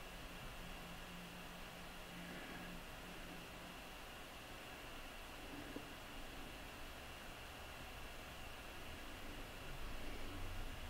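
Faint steady hiss of room tone, with one faint click a little before six seconds in.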